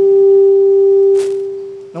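A single steady pure tone with faint overtones, held for about two seconds and fading away near the end, with a brief hiss about a second in.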